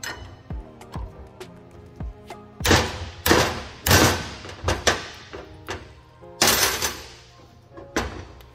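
Metal clicks and clanks of a combination wrench turning and knocking against a fitting on a high-pressure oil pump. There are a few light clicks at first, then a run of louder short clanks through the middle and one more near the end, over background music.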